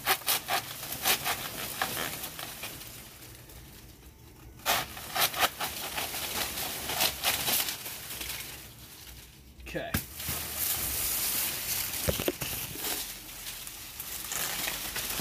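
Hand saw cutting through a banana plant's soft, fibrous pseudostem in runs of quick back-and-forth strokes with short pauses. Near the end the severed top topples, its leaves rustling.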